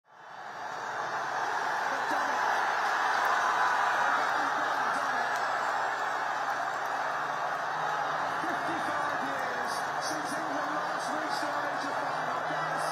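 A large crowd of football fans cheering and shouting in celebration of a win: a dense roar of many voices that fades in over the first second, with single shouts rising out of it in the second half.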